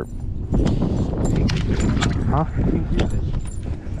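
Wind rumbling on the microphone, with scattered sharp clicks and knocks from a baitcasting rod and reel being cast and handled.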